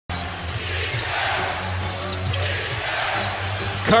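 Basketball being dribbled on a hardwood court over the steady noise of an arena crowd and a low hum. A commentator's voice cuts in just before the end.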